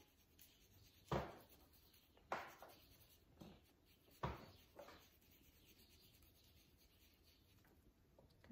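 A cleaning toothbrush scrubbing a wet baking-soda and dish-soap paste into shirt fabric. There are four short, faint brushing strokes about a second apart in the first half.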